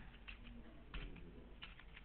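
Faint computer keyboard keystrokes: a few scattered clicks.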